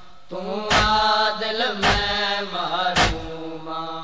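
Voices chanting a long-held refrain of a Punjabi noha, the pitch slowly bending. Three sharp thumps about a second apart keep the beat: the matam of hands striking chests.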